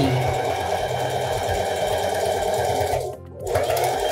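Domestic electric sewing machine stitching a quarter-inch seam to join the ends of a knit rib neckband. It runs steadily for about three seconds, stops briefly, then runs again for a short stretch near the end.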